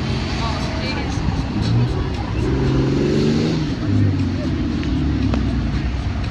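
A motor vehicle's engine running nearby, its pitch rising about two seconds in and dropping again after about four, over wind noise on the microphone.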